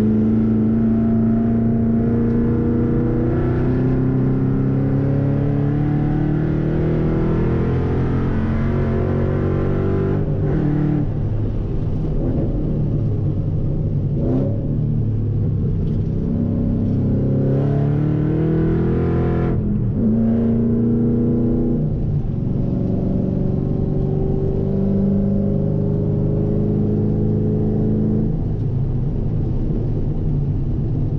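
Supercharged V8 of a Saleen S197 Mustang GT heard from inside the cabin at speed on a road course, the engine note climbing steadily as the car accelerates. Three times the pitch drops abruptly and then builds again, and it holds steadier near the end.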